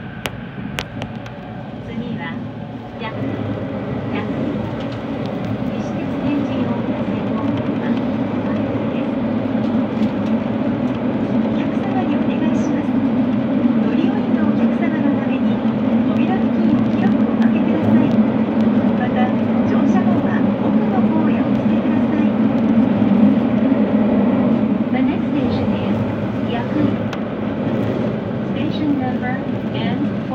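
Fukuoka City Subway 3000-series linear-motor train heard from the cab, running through a tunnel: a steady low rumble of wheels and running gear that builds over the first several seconds as it gathers speed, then holds.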